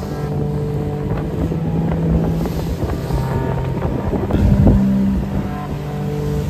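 Wind buffeting the microphone and water rushing along the hull of a sailing yacht under way in a strong breeze and choppy sea, with background music underneath.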